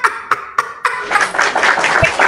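A crowd clapping: a few separate claps, then applause that thickens about a second in.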